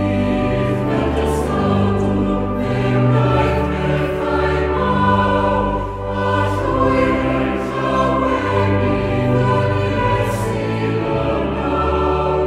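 Choir singing a Welsh-language hymn with instrumental accompaniment, in long sustained chords that run on without a break.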